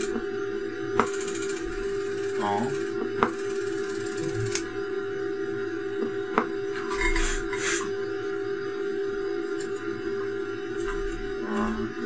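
A radio amplifier test rig gives a steady buzzing tone, broken by a few sharp clicks in the first half. The clicking comes from the amplifier switching while its bench power supply sits in current limiting.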